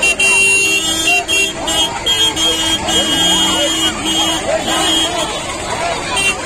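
Vehicle horns honking in long, repeated blasts over the chatter of a crowd.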